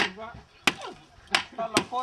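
A hand tool striking and breaking a dried mud wall: four sharp blows at an uneven pace as a mud-walled room is demolished.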